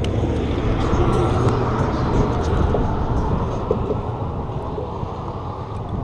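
Road traffic passing on the bridge roadway: a steady low rumble of vehicles that swells early and slowly fades away.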